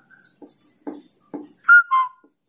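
Marker pen writing on a whiteboard: a few short scratchy strokes, then a loud, high squeak about 1.7 seconds in that drops in pitch near the end.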